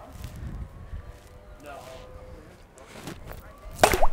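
Quiet outdoor background with faint voices in the distance, then one short, sharp, loud sound near the end.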